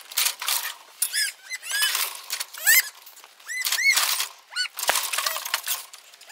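Small birds chirping busily in quick rising-and-falling notes, over sharp metallic clanks and rattles from the steel cattle crush and its gates.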